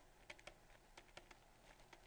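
Faint, irregular light ticks and taps of a pen writing on a tablet, several a second, over near-silent room tone.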